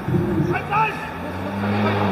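Players shouting short calls to each other on a football pitch. From about halfway through, a low steady hum joins them.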